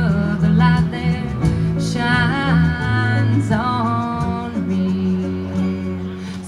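Live bluegrass band playing: a bowed fiddle over a picked five-string banjo with a steady bass line, and a woman's voice singing.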